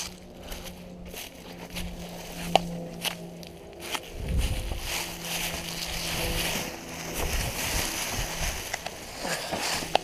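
Footsteps crunching and rustling through dry fallen leaves and dead grass, with a few sharp snaps in the first few seconds and steady crunching from about four seconds in.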